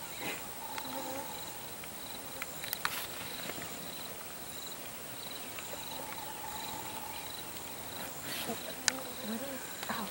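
An insect chirping steadily, a short high trill repeating evenly about every two-thirds of a second. Faint low murmuring sounds come and go beneath it, and a sharp click sounds near the end.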